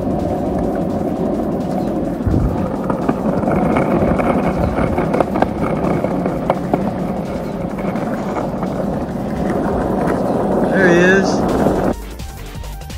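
Skateboard wheels rolling on city asphalt: a steady rumble with scattered light clicks as the wheels cross cracks and joints. A short wavering, voice-like call comes in near the end.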